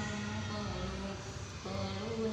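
A child's voice chanting Quranic recitation, holding long drawn-out tones and pausing briefly near the end, over a steady low hum.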